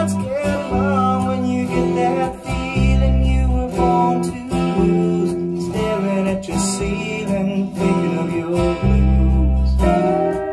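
A song led by strummed acoustic guitar with deep bass notes, played back over hi-fi loudspeakers from a native DSD256 recording transferred from analog master tape.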